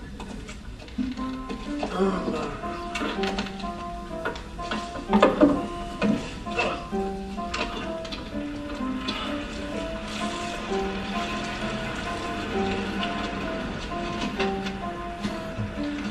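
Film score music played over cinema speakers: a slow melody of short held notes stepping up and down, with a few brief voice sounds from the film early on.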